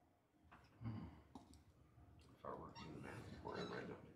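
Faint lecture-room sounds: a soft knock about a second in and a few light clicks, then faint, indistinct voices in the second half.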